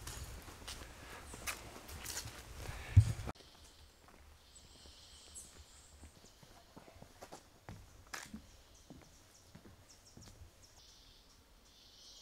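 Footsteps on a rainforest trail, with low rumble from the camera microphone and a sharp knock about three seconds in. After that it turns much quieter: scattered faint steps and a faint high hum that comes and goes.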